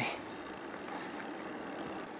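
Steady rolling noise of a bicycle's tyres on a loose gravel and dirt track, an even crunch and hiss with no distinct knocks.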